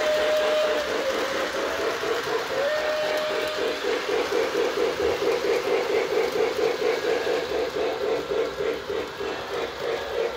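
Lionel LionChief John Deere 0-8-0 toy steam locomotive's built-in sound system playing a rhythmic steam chuff as the train runs, with a whistle blast ending just under a second in and a second short whistle blast about three seconds in.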